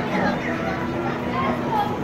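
Background voices and music in a busy indoor arcade, over a steady low hum.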